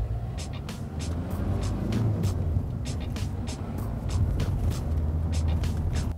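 Car engine and road rumble heard inside a moving car's cabin, under music with a steady beat.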